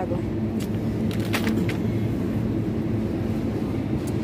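Steady low mechanical hum from supermarket refrigerated meat display cases, with a couple of light clicks in the first second and a half.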